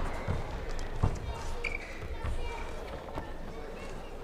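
Sports-hall ambience between badminton rallies: a low thud and then a sharper knock in the first second, a few short shoe squeaks on the court floor, and distant voices from around the hall.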